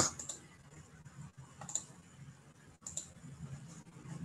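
Scattered sharp clicks from a computer being operated by hand, a handful of them a second or more apart, over a faint steady low hum.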